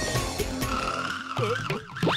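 Cartoon soundtrack: background music, with a comic sound effect about halfway through, a drawn-out hissing screech that slides in pitch. Near the end, playful music with swooping notes comes in.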